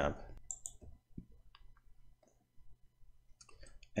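A few faint, scattered clicks from computer use at a desk, the sharpest about half a second in, over quiet room hum.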